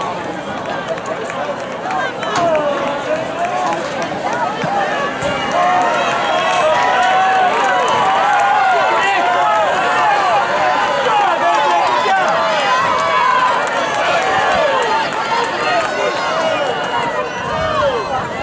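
Spectators at a track race shouting and cheering runners on, many voices overlapping, growing louder from about two seconds in.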